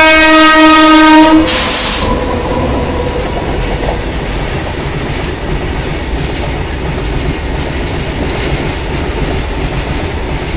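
Freight train locomotive's horn sounding one loud, steady blast that cuts off about a second and a half in, then the steady rumble and clatter of the freight wagons running past.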